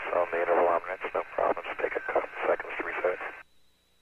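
Speech over a narrow-band space-to-ground radio voice loop, talk that is not made out, stopping abruptly about three and a half seconds in. A faint steady high tone follows.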